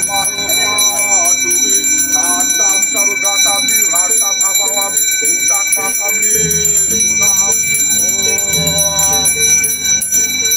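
A priest's hand bell rings continuously, a steady high shimmer of several tones, over voices chanting. A low hum joins about six seconds in.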